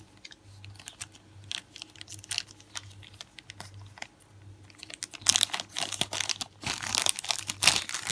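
Clear plastic bag and thin holographic nail foil sheets crinkling as they are handled, in scattered crackles that grow louder and denser about five seconds in and again near the end.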